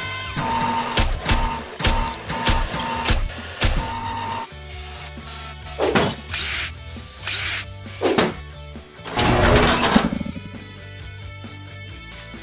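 Music with mechanical sound effects for an animated logo reveal: a run of sharp metallic clicks about twice a second, then several whooshes, and quieter near the end.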